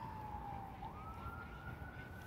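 Faint emergency-vehicle siren wailing from the city streets: one thin tone that slides slowly down, then about a second in jumps and sweeps back up.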